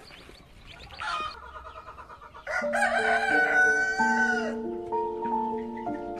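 A rooster crowing about two and a half seconds in: one long call that falls at its end, preceded by fainter chicken calls and chick chirps. Background music with steady held notes comes in under the crow and carries on.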